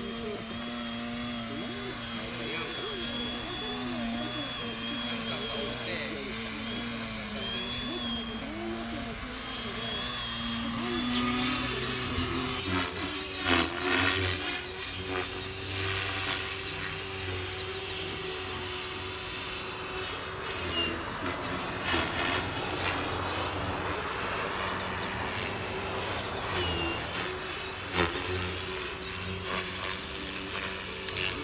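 Radio-controlled aerobatic airplane flying overhead, its motor whine rising and falling in pitch with the throttle, with people's voices in the background. About eleven seconds in, the sound changes to a fuller, noisier whir with a few louder swells.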